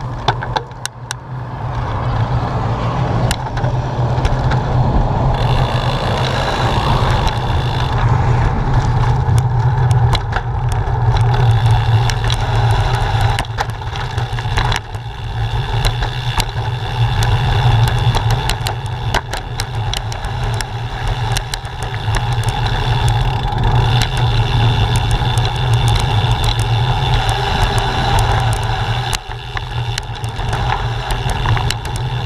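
Bicycle ride over rough, cracked concrete heard from a handlebar-mounted camera: a loud steady rumble with frequent rattles and knocks as the bike jolts over the bumps. It gets louder about two seconds in as the bike gets going.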